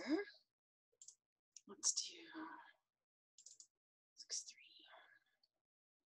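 A person speaking quietly to themselves in a few short phrases, with dead silence between them.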